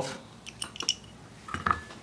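Light metallic clicks and small scrapes as a little metal tinder holder is pulled off the aluminium cup of a solar spark lighter, with a brief faint ring near the end.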